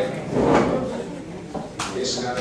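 A voice talking, with one short, sharp knock near the end.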